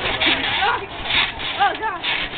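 Young people shrieking and laughing in short high-pitched calls, with bursts of rustling noise from bouncing on a trampoline mat.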